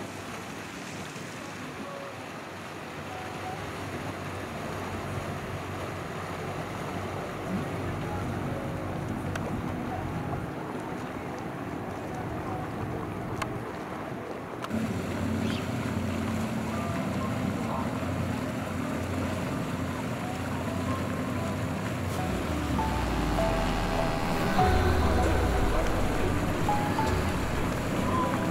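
Outboard-powered boats running past on open water: a steady engine hum with hull wash and wind from twin Yamaha outboards, changing about halfway to a louder, lower hum from a single Mercury outboard that grows louder toward the end.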